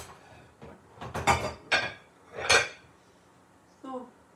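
Dishes and cutlery clattering and knocking together as they are handled, in a few short clatters, the loudest about two and a half seconds in.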